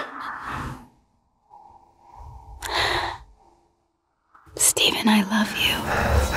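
A man's emotional breathing while close to tears: a breathy sigh at the start and a sharp in-breath about three seconds in. Louder broken vocal sounds follow near the end.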